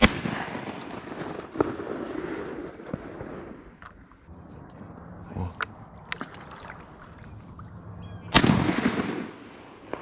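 Two shotgun shots, one right at the start and a second about eight and a half seconds in, each followed by a rolling echo that dies away over a second or more.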